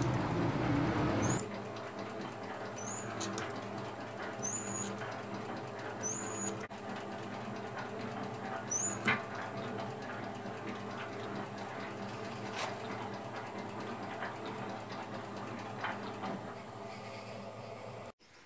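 Metal shaper slotting a keyway in an aluminium pulley bush: a steady machine hum with a short, high, rising squeak about every one and a half seconds as the ram strokes, and a few sharp ticks in the second half.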